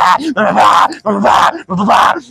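A man loudly chanting a repeated syllable in a strained, wavering voice, about three syllables a second.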